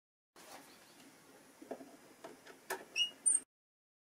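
Quiet handling noise of a plastic surge-protector unit and its wiring being moved over a cardboard box: a few light clicks and taps, then two short high squeaks near the end. The sound starts and cuts off suddenly.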